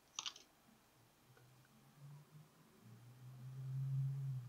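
A short click from small plastic model parts being handled and pressed together, then quiet with a faint low hum that swells near the end.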